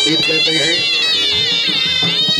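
Shehnai (double-reed pipes) playing a reedy, sliding, ornamented melody over dhol drumming.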